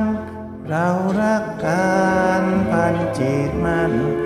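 Slow Thai ballad sung in Thai over a karaoke backing track. The voice comes in with a rising note about a second in and holds long notes with vibrato over steady accompaniment.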